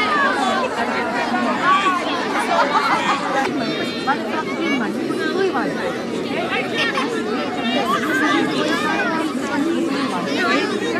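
Many children's voices chattering and calling out at once, an overlapping babble with no single voice standing out.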